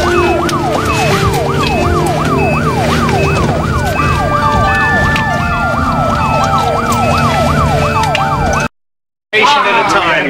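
Ambulance siren on the yelp setting: a fast, repeating rise-and-fall wail, with a slower wail and a steady tone over it from about the middle, above a low vehicle rumble. It cuts off abruptly near the end.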